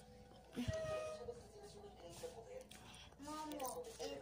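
Indistinct voices in the background, with a single thump just under a second in.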